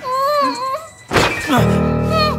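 A woman's muffled, wavering moan through a gag, then a heavy thud about a second in as a body hits the floor. Near the end a low sustained music chord comes in, with more muffled moaning over it.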